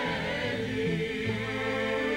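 Dance orchestra with brass, accordion and piano accompanying a women's choir in a slow traditional Hebrew chant, the voices and instruments holding long chords that shift about halfway through.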